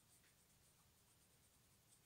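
Near silence, with faint soft strokes of a makeup brush rubbing powder over the skin of the cheek.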